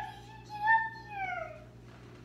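Meow-like calls: a short rising one at the start, then a longer meow about half a second in that holds its pitch and falls away near the end.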